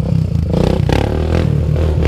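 A 300 cc ATV's engine running steadily at low revs, with a few brief knocks and rattles.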